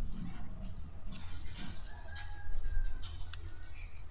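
Leaves and stems rustling and snapping as garden plants are picked by hand, with a bird calling in the background.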